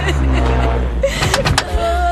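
A Hindustan Ambassador car's engine running low and steady as the car pulls up, with a few sharp clicks of its door opening about a second in.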